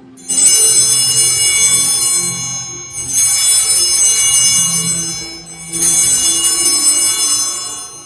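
Altar bells rung three times, about every two and a half to three seconds, each peal a bright jingling ring that fades away. Rung like this at the consecration, they mark the elevation of the host or chalice.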